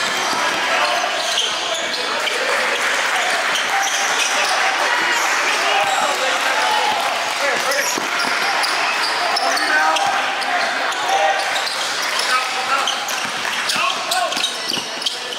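Live game sound in a gym: a basketball bouncing on the court amid indistinct voices of players and spectators, echoing in the large hall.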